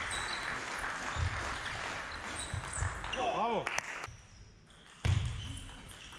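Table tennis rally in a large hall: sharp hits of the ball on bats and table and thumps of footwork, spaced irregularly, over a background chatter of voices. A brief pitched sound that rises and falls cuts in a little over three seconds in, and a loud hit comes about five seconds in after a quieter moment.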